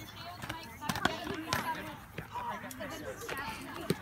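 Padded practice weapons knocking against shields and each other in a scatter of sharp hits, the loudest about a second in and just before the end, over children's voices calling out across the field.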